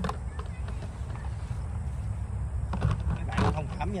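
Steady low outdoor rumble with a few faint clicks, and a man's voice briefly in the last second.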